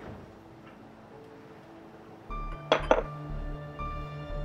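A porcelain cup set down on its saucer with two quick clinks about three seconds in, over quiet background music with a steady low pulse that starts a little earlier.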